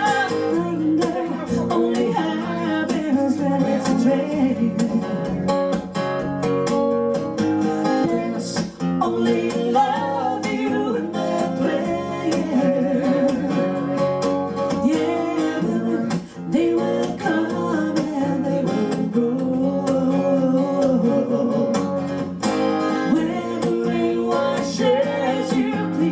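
A woman singing a song into a microphone, accompanied by a strummed acoustic guitar, played live.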